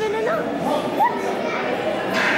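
Indistinct chatter of spectators mixed with children's voices, echoing in a large hall.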